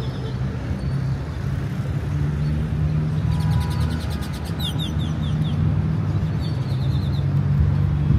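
Steady low rumble of city traffic with birds chirping over it: a rapid trill and a run of short falling notes about halfway through, and another short series of notes near the end.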